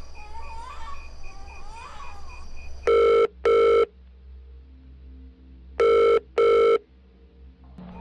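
Telephone ringing in a double-ring pattern: two pairs of short rings, the first pair about three seconds in and the second about three seconds later.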